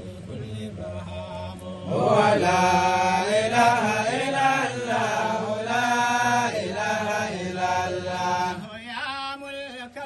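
A man's voice chanting in long, drawn-out melodic phrases, faint at first and much louder from about two seconds in, easing off near the end.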